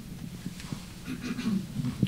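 A lull between speakers: a faint voice away from the microphone and room noise while a handheld microphone is passed from one person to the next.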